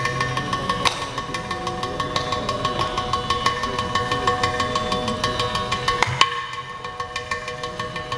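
Carnatic percussion solo (thani avarthanam) on mridangam and ghatam: a fast, dense run of hand strokes, with a sharp louder stroke about a second in and another about six seconds in. A steady drone sounds beneath.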